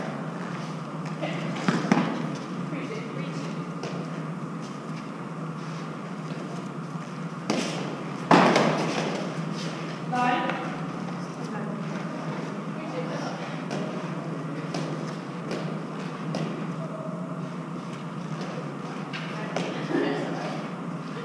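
Eton Fives ball struck by gloved hands and hitting the court walls: a handful of sharp knocks, the loudest about eight seconds in with a short echo off the walls, among players' low voices.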